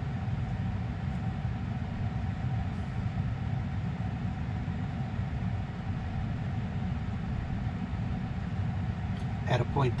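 Steady low hum inside a stationary electric car's cabin, with a faint steady whine running under it.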